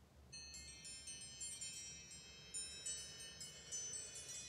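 Small metal chimes ringing: a tinkling cluster of many high notes, struck over and over, that starts suddenly about a third of a second in and keeps ringing on. It is the chime that closes a meditation.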